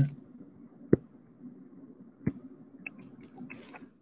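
Computer keyboard keystrokes: two separate clicks about one and two seconds in, then a quick run of lighter key clicks near the end, over a faint steady hum.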